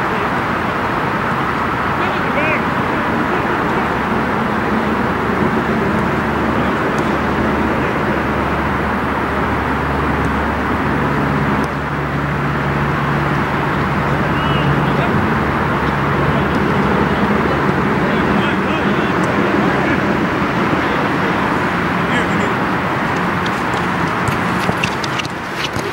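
Steady loud outdoor noise over a soccer pitch, with distant calls from players mixed in. A low hum like a passing vehicle swells in the middle.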